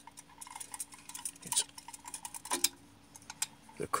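Irregular light metallic clicks and scrapes as the metal case of a Honeywell L404A steam pressure control is handled and turned in the hand.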